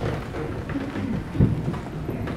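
Low rumbling room noise of a congregation shifting in the pews, with scattered small knocks and one louder thump about one and a half seconds in.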